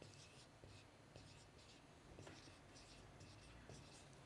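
Marker writing on a whiteboard: a series of short, faint strokes as figures are written.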